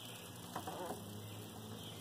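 Quiet room tone: faint steady hiss, with a few soft light ticks about half a second in.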